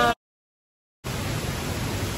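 Steady rush of turbulent water below a dam outlet, broken near the start by about a second where the sound cuts out completely.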